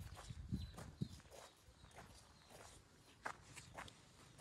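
Faint, irregular footsteps crunching on a gravel lane.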